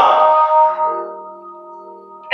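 A held instrumental chord of several steady notes, loud at first and then slowly fading away.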